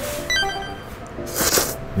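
A short, bright bell-like chime, likely an edited-in sound effect, then a quick slurp of thick noodles about a second and a half in.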